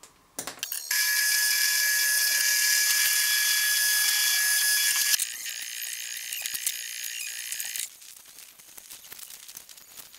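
Adhesive tape pulled off its roll: a long loud screech of about four seconds, then a quieter, slower pull of about two and a half seconds, followed by faint crackling as the strip is handled.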